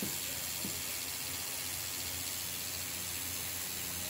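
Rotary tattoo machine running steadily as it works on skin, heard as an even hiss with a faint low hum underneath.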